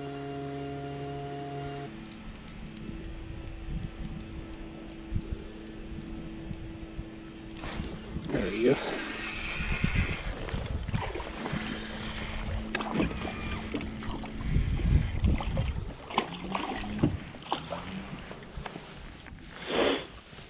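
Spinning reel being cranked and the rod handled while a crappie is reeled in, with scattered clicks and knocks over a low steady hum. Background music ends about two seconds in.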